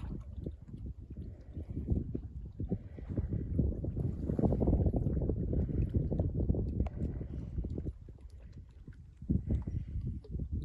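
Wind buffeting the microphone: an irregular low rumble with gusts, easing off for about a second near the end.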